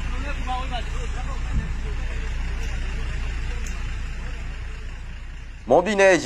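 Road traffic in field audio: vehicles on a road with a steady low rumble, and faint voices in the first second or so.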